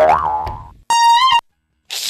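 Cartoon-style comedy sound effects: a springy boing at the start, then a short, high electronic jingle of steady tones that stops abruptly about a second and a half in.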